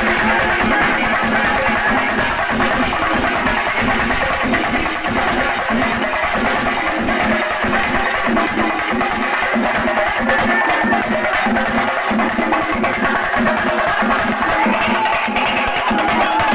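A Singarimelam troupe's chenda drums playing a loud, dense, continuous beat with no pause.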